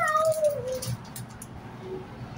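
A child's high voice held in one long, wavering sing-song call that falls in pitch and stops about a second in, followed by quieter room noise with light clicks.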